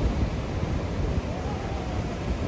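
Ocean surf washing over rocky reefs, with wind rumbling on the microphone.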